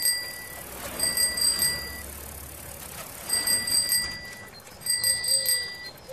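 Bicycle bell rung in repeated bursts of about a second each, each burst a quick trill of rings.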